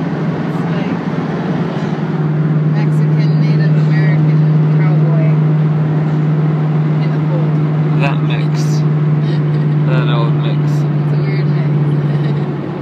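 Steady road and engine drone inside a car cabin at freeway speed, with a strong low hum that gets a little louder about two seconds in.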